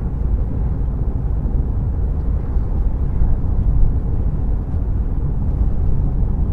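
Steady low rumble of road and engine noise inside a car's cabin while it drives along at a steady speed.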